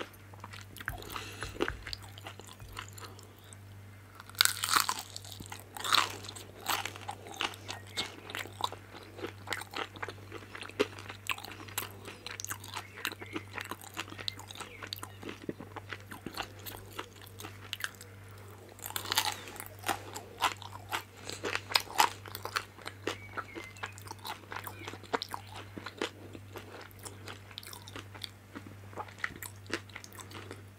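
Biting into crunchy pan-fried vegetable dumplings and chewing them. Two loud crunchy bites come about four seconds in and about nineteen seconds in, each followed by a long run of smaller crunching chews. A steady low hum runs underneath.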